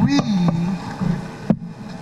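A voice speaking slowly and haltingly, drawing out a word in a pause mid-sentence, with two sharp clicks.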